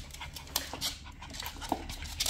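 A Shiba Inu and a puppy play-fighting: quick panting breaths and scuffling, in short irregular noisy bursts.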